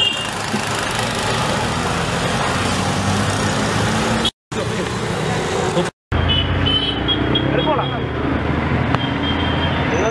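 Street traffic: vehicle engines running steadily, with a few short horn toots in the second half and people's voices mixed in. The sound cuts out twice, briefly, near the middle.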